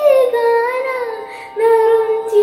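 A girl singing a Malayalam devotional song solo, holding long notes with ornamented glides. She breaks off briefly about a second and a half in, then comes back on a new note.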